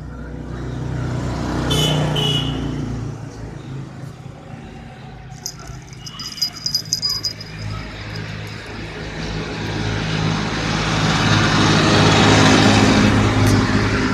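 A motor vehicle's engine running, with a steady low hum under a broad noise that grows louder over the last few seconds.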